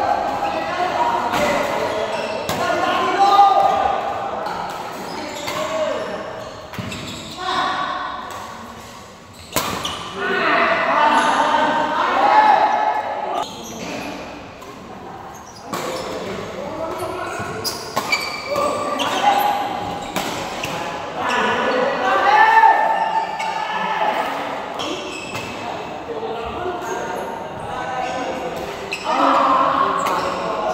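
Badminton rallies in a large hall: sharp smacks of rackets striking the shuttlecock and footfalls on the court, with players' voices calling out between and during the points.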